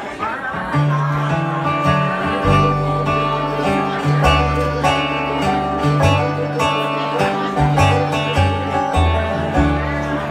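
Acoustic bluegrass band playing an instrumental opening: banjo rolls and strummed acoustic guitar over walking upright bass notes, with mandolin, kicking in about a second in.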